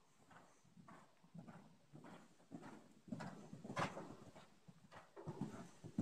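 A horse's hoofbeats on soft sand arena footing, a run of muffled thuds that grow louder as it comes closer.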